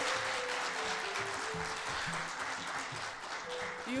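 Audience applauding steadily, with background music holding a few low sustained notes underneath.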